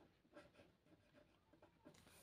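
Near silence with faint scratches of a pen writing on paper, including two small ticks, one about half a second in and one near the end.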